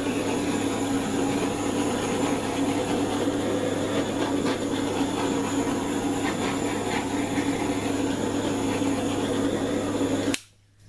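Handheld butane torch flame burning with a steady hiss, passed lightly over wet acrylic paint to bring air bubbles to the surface and pop them.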